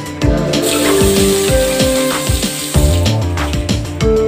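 Background music with a steady beat. Over it, for a couple of seconds starting about half a second in, a hiss of water from a newly fitted chrome wall faucet as it is opened.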